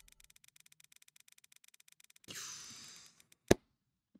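Rapid, evenly spaced faint ticking of a website's upgrade-wheel spin sound effect as the needle sweeps round, followed about two seconds in by a short hissing burst of sound effect as the spin ends, and a single sharp click near the end.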